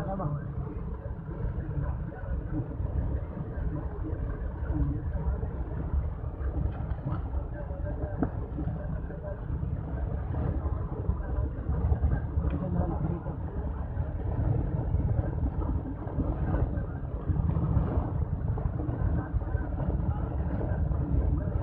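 Steady low rumble of a road vehicle heard from inside while it drives along, with indistinct voices over it.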